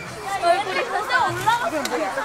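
Several children's high-pitched voices chattering at once, with no clear words.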